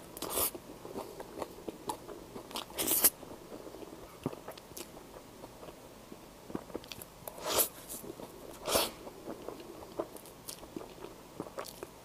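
Close-miked chewing and mouth sounds of a person eating soft layered crêpe cake, with scattered small wet clicks and a handful of short, louder bites spread through.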